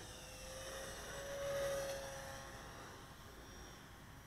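Electric RC model P-47 Thunderbolt flying past, its motor and propeller whining. The whine grows louder to a peak about a second and a half in, then fades as the plane moves away.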